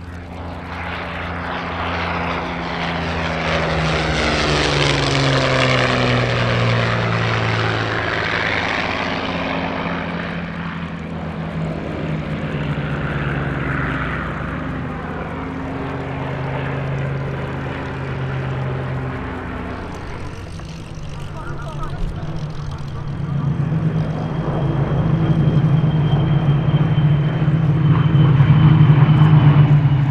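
Rolls-Royce Merlin V12 piston aero engines of Spitfire and Hurricane warbirds flying past. In the first seconds a low pass swells and its engine note falls in pitch as the plane goes by. Later the drone of several planes grows steadily louder as a formation approaches.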